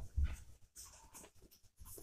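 Faint handling of paper instruction sheets: a soft thump about a quarter second in, then light rustling of paper.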